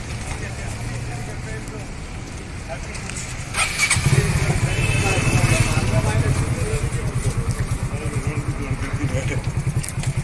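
A vehicle engine running nearby, heard as a low, fast-pulsing rumble that comes in louder about four seconds in. Before it there is a quieter steady low hum.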